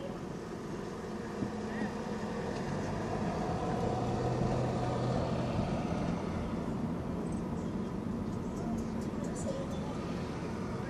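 A car driving slowly along a city street, heard from inside the cabin: a steady drone of engine and tyre noise that swells a little in the middle.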